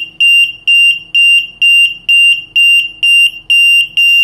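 Piezo alarm buzzer wired to a GSM alarm box's alarm output, beeping rapidly in one high tone at about four beeps a second: the box's input alarm has been triggered by shorting the input to ground.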